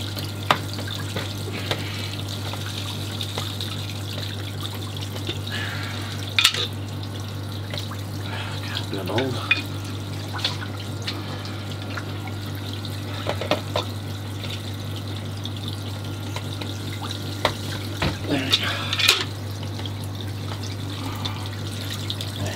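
Water running and trickling from a leaking PVC ball valve on a pond's bottom-drain purge line, which the owner suspects has a dislodged O-ring. A few sharp clicks and knocks of tools on the pipework sound over a steady low hum.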